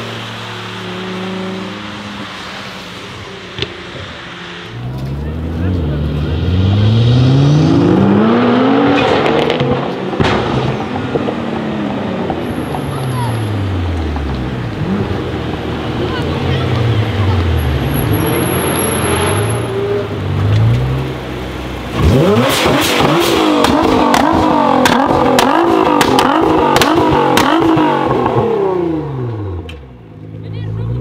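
Nissan GT-R's twin-turbo V6 through an Armytrix exhaust, revved up and down again and again. About 22 seconds in comes a loud, long rev with a rapid string of sharp exhaust pops and bangs, dying away near the end.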